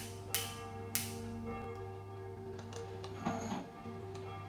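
Two sharp clicks, about a third of a second and a second in, as a laboratory gas burner is lit, over soft steady background music.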